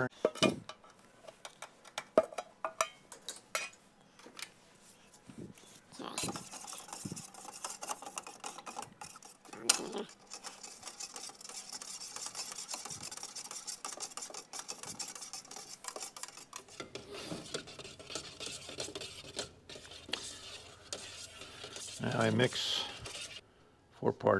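A metal paint can being opened, with a few clicks and taps, then a stick stirring thick enamel paint in the can, scraping and sloshing steadily for about ten seconds before it goes softer.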